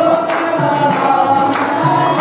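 A group of devotees singing a devotional bhajan together, with percussion and hand clapping keeping a steady beat.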